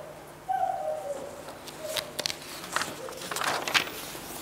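Bible pages being handled at a lectern: a few light clicks and a brief paper rustle near the end, with several faint short falling hums.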